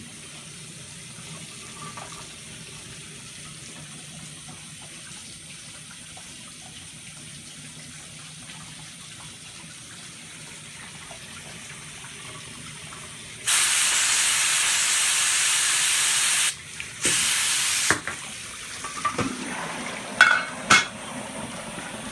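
Dry ice sublimating in a sink of water, with a low steady hiss of bubbling and running water. About thirteen seconds in comes a loud hissing spray lasting about three seconds, then a second, shorter one about a second later, followed by a few knocks.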